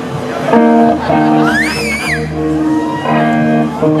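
Rock band's electric guitars playing sustained chords that change every second or so, with a short high sliding tone rising and falling about halfway through.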